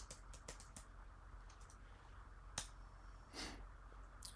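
Near silence of a small room with a few faint computer keyboard and mouse clicks, one sharper click about two and a half seconds in, and a short breath near the end.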